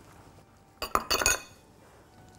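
Metal wire whisk clinking against a glass mixing bowl while ground almonds are worked into a little milk, a quick run of clinks about a second in.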